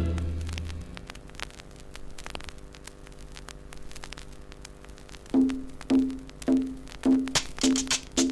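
A track of 1960s Colombian dance music played from a vinyl LP ends, its last chord dying away within about a second. Then come a few seconds of record-surface crackle and steady hum in the groove between tracks. About five seconds in, the next track starts with a short note repeated about twice a second.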